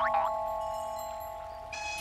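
Small handbells ringing, several clear tones dying slowly away, with a new chime coming in near the end.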